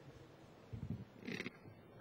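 A man at a close microphone clearing his throat: a short low grunt, then a harsher cough-like rasp about half a second later.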